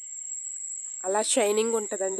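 Steady, unbroken high-pitched insect chirring, with a person's voice starting to speak about a second in.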